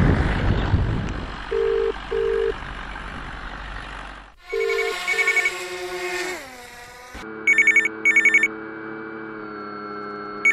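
A telephone call going out: two double-ring tones on the line, each a pair of short 'brr-brr' bursts, followed from about seven seconds in by a trilling phone ring in short bursts over a steady electronic drone. Wind noise on the microphone fades out in the first second.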